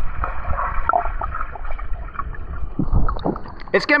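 Muffled sloshing and gurgling of pool water picked up by an action camera's microphone held underwater, as a dog paddles close by. A man's voice comes in just at the end as the camera surfaces.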